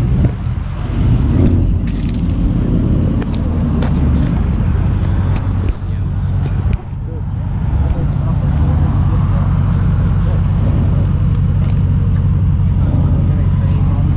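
A car engine idling steadily with a low, even rumble, with voices in the background.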